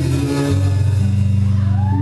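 Live rock band playing, electric guitar and bass holding sustained chords with no singing. The low chord changes about half a second in.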